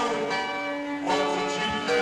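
Live punk band music: ringing, sustained chords that change about once a second, with no singing.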